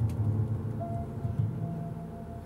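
Acoustic guitar and upright piano playing together, with chords ringing out and slowly dying away while a few new notes come in.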